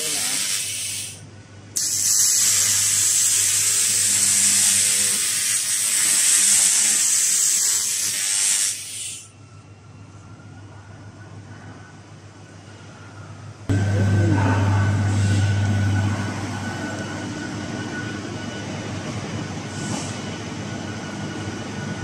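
Handheld fiber laser cleaner ablating rust from a steel bar: a loud hissing crackle in two bursts, the second lasting about seven seconds before it stops. Later the sound changes suddenly to a steady machine hum with a faint high whine.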